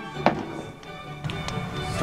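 Background music, with a few sharp knocks of a kitchen knife slicing new potatoes against a cutting board; the loudest knock comes just after the start.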